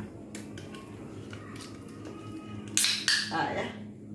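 Light clicks and scratches of fingernails picking at the ring pull of a drink can that will not open. About three seconds in come two short, louder bursts with a hiss.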